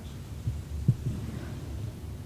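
Steady low hum with two dull low thumps, about half a second and about a second in, the second louder: hands pressing down on a patient's lower back on a padded chiropractic table.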